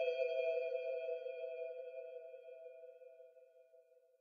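The final held chord of an electronic track: a few steady, ping-like tones ringing on alone and fading away, dying out near the end.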